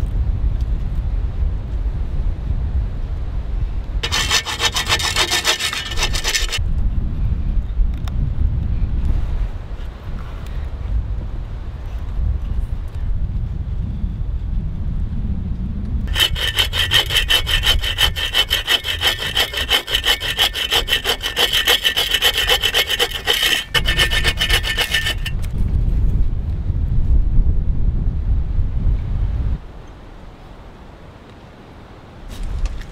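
Hand saw cutting through wood in quick, even strokes: a short spell about four seconds in and a longer one from about sixteen to twenty-five seconds. Strong, gusty wind rumbles on the microphone throughout.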